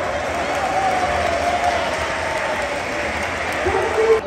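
Audience in a large hall applauding, with a voice calling out in a long, wavering cry over the clapping.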